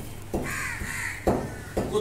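A crow caws once, a harsh call just under a second long. Around it come a few short knocks as raw meat is handled in a large metal pot.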